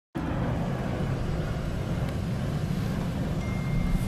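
Steady low rumble of road and engine noise inside a car's cabin.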